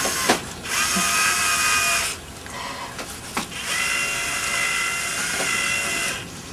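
Cordless drill driving screws through a perforated rubber mat into a wooden board: two runs of a steady motor whine, the first short and the second a few seconds long, with a click between them.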